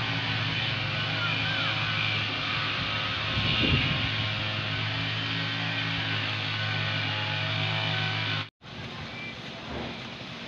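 A motor vehicle engine idling steadily, with a brief swell a few seconds in. It cuts off suddenly near the end, leaving quieter outdoor background.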